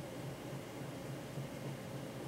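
Steady faint hiss with a low hum underneath: room tone, with no distinct sound event.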